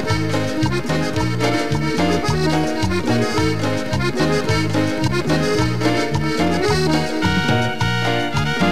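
Live cumbia band playing an instrumental passage led by piano accordion, over a steady pulsing bass line and hand percussion.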